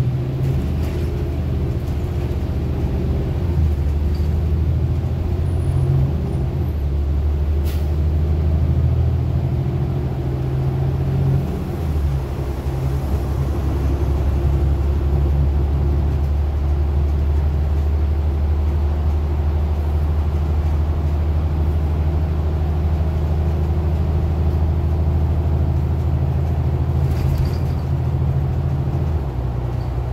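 City bus engine heard from inside the cabin as the bus pulls away from a stop and gathers speed: a loud, steady low rumble. Its note changes about three seconds in and again with a brief dip about twelve seconds in, as the transmission shifts.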